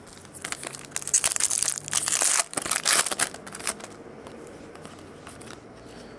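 A foil baseball card pack being torn open and crinkled: a couple of seconds of crackling and tearing starting about a second in, then only faint handling.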